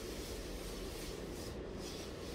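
Paint roller rolling over a painted wall, a steady even scrubbing sound.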